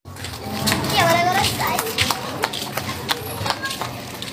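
Voices in the street, with a high voice calling out about a second in, over the slap of flip-flop footsteps on concrete.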